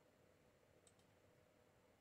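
Near silence: room tone with a faint steady hum, and two very faint short clicks close together about a second in.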